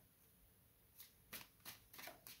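Tarot deck being shuffled in the hands: four or five faint card snaps starting about a second in.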